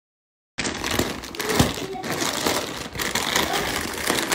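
Plastic snack bags crinkling and rustling as hands rummage through them in a cardboard box, starting suddenly about half a second in.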